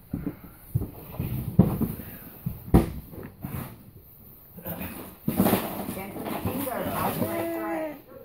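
Indistinct talk from people close by, with a few sharp knocks in the first half. The loudest knock comes about three seconds in.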